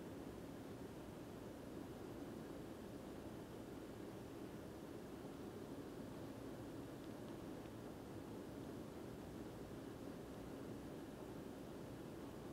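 Faint, steady room tone: an even low hum and hiss with no distinct knocks or clanks.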